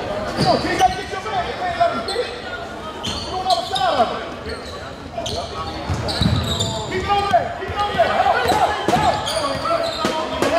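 Basketball bouncing on a hardwood gym floor and sneakers squeaking during play, in an echoing gym, with voices of players and spectators.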